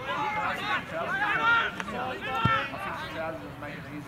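Men's voices shouting and calling across an open football field during play, with a single dull thud about two and a half seconds in.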